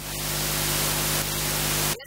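Loud steady static hiss with a low electrical hum underneath. It drops out for an instant at the start and cuts off abruptly just before the end.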